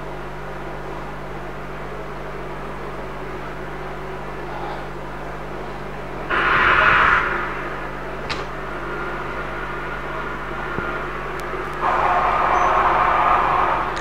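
Steady low electrical hum and background noise of an open microphone line, with two sudden bursts of hiss, one about six seconds in lasting under a second and a longer one starting near the end, and a faint click between them.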